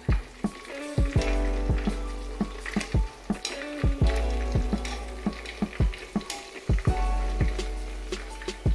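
Coated chicken pieces sizzling as they deep-fry in hot oil, lowered in with a wire strainer. Background music with a steady beat and deep bass plays over it and is the louder sound.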